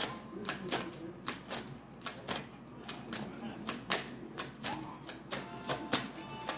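Irregular light clicks and taps, roughly two to four a second, like fingers tapping or cards being handled on a hard surface.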